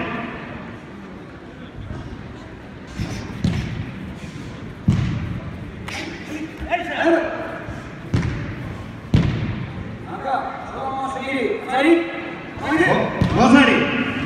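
Dull thuds of full-contact karate kicks and punches landing: about five sharp impacts between roughly three and nine seconds in, echoing in a large hall. Voices come in over the last few seconds.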